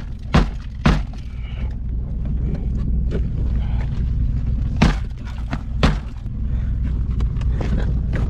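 A shoe kicking the inside of a car's door from the seat, sharp thuds: two about half a second apart near the start and two more about a second apart around five to six seconds in. The door does not give. A steady low hum runs underneath.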